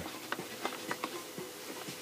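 A few faint, irregular clicks and taps of hands handling the plastic top cover of a McCulloch Titan 70 chainsaw as the air filter cover is being taken off.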